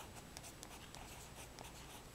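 Fountain pen nib scratching faintly on card stock in short strokes, with a small tick as the nib touches down near the start.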